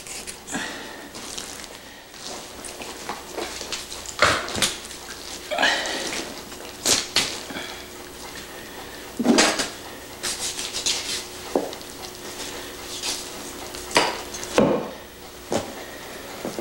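A caribou carcass being butchered and skinned by hand: irregular scrapes, rustles and sharp knocks, the loudest a few seconds apart.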